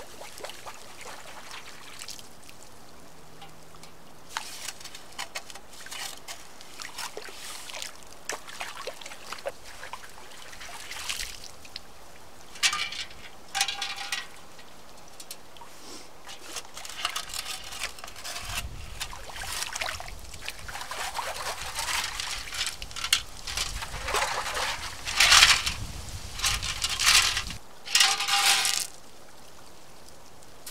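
Yellow perforated plastic sand scoop dug into a shallow creek bed and lifted out, water sloshing, splashing and draining out through its holes in irregular bursts. The splashes grow louder and more frequent in the second half.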